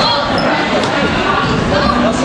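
Voices of players and spectators chattering in a school gymnasium, with a basketball bouncing on the hardwood floor.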